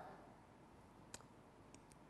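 Near silence: room tone, with one faint click about a second in and two fainter ticks near the end.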